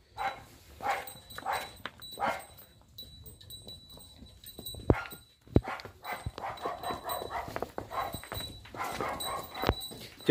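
A dog barking in short repeated bursts, a cluster near the start and another in the second half, with a few sharp clicks in between.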